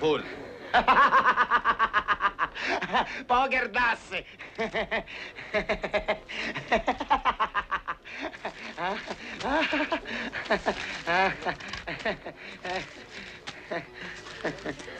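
Human laughter: several long bouts of rapid, repeated snickering and chuckling, with voice sounds in between.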